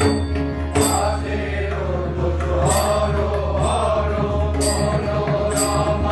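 Group of voices singing a Kali kirtan, a Hindu devotional chant, over a steady low drone, with a bright metallic strike about every second.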